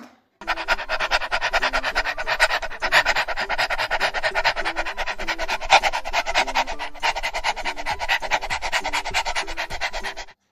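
A dog panting fast and hard in a quick, even rhythm of breathy rasps, about ten a second. It starts about half a second in and carries on without a break, with a faint melody of low tones underneath.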